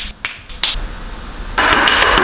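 Fingers snapping a few times to call a bartender over, then a short loud rush of hiss-like noise near the end.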